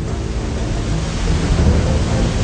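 Muddy floodwater rushing and churning over river rapids toward a waterfall: a steady, loud rushing noise with a deep rumble underneath.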